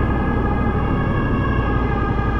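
Yamaha MT-07 parallel-twin motorcycle engine running at a steady speed inside a road tunnel, with an ambulance siren sounding over it as a steady held tone.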